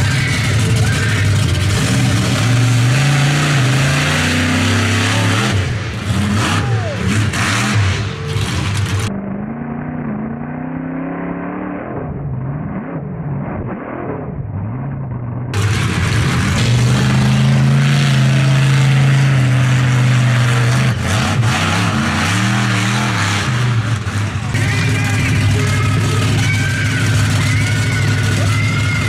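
Monster truck engine revving hard and dropping back again and again as the truck drives around the arena. In the middle stretch it is heard from inside the cab, duller and muffled.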